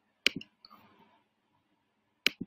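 A computer mouse button clicked once, a sharp double click of press and release about a quarter second in, followed by a faint brief rustle.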